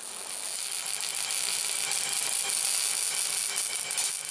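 Angle grinder grinding a steel pipe: a steady, high-pitched hissing rasp of the disc on metal.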